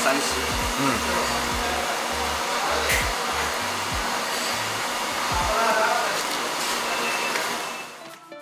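Steady, even rushing air noise, like a running fan, over background music with low bass notes. The noise cuts off suddenly near the end.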